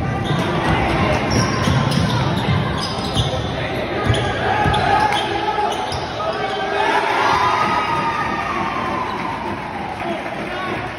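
A basketball being dribbled on a hardwood gym floor during a fast break, the bounces echoing in the gym, with players and spectators shouting over them.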